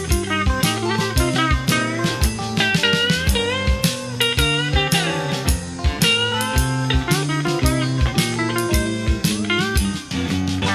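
Electric blues band playing an instrumental break: a lead electric guitar solos with bent notes over a steady drum-kit beat.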